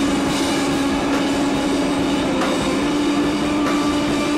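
Live rock performance with a loud, steady wall of distorted, amplified noise over one held low note, with no clear beat. The held note steps slightly higher about three seconds in.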